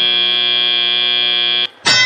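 FRC field buzzer sounding one long, steady, harsh tone to mark the end of the autonomous period. It cuts off about a second and a half in, and another sound starts just before the end.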